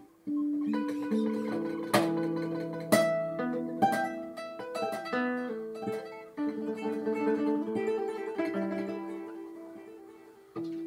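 Solo acoustic guitar played fingerstyle: plucked single notes and chords ringing over each other, with sharp accented chords about two and three seconds in and a note sliding down in pitch around five seconds. The playing dips briefly near six seconds, then goes on and fades toward the end.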